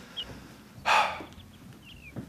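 Small birds chirping here and there in a quiet outdoor ambience, with a short breathy rush of noise about a second in.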